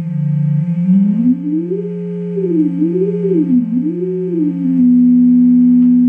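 Two oscillators of a Rockit HackMe synthesizer sounding together: one holds a steady low tone while the second is detuned against it, its pitch dipping, climbing, swinging up and down twice, and settling on a steady higher note near the end. The detune moves in individual note steps rather than a smooth transition.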